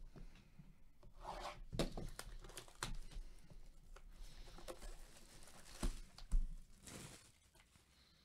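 Plastic shrink-wrap being torn and peeled off a cardboard trading-card box by gloved hands: irregular crinkling and tearing, with a few sharp crackles.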